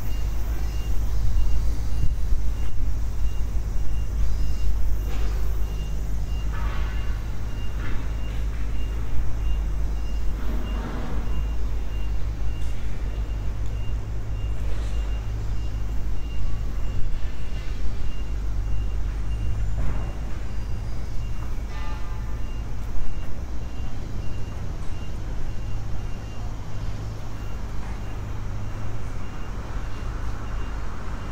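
Outdoor city ambience: a steady low rumble of traffic, with a faint high beep repeating at an even pace through most of it, like a vehicle's reversing alarm.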